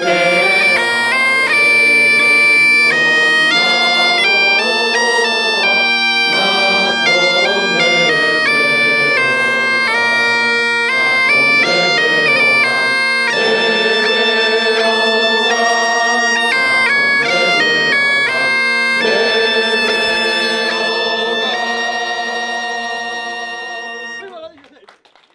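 Galician bagpipe (gaita) playing a melody over its steady drone, with a few short breaks between phrases, fading out near the end.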